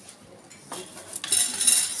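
Wire birdcage rattling and clinking as it is handled, starting about two-thirds of a second in and loudest in the last second.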